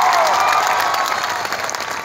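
Audience applauding: a dense patter of many hands clapping, loud and easing off slightly toward the end, with a long held cheer from the crowd tailing off in the first half-second.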